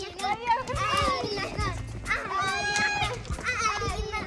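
Children calling out and squealing with excitement, over background music.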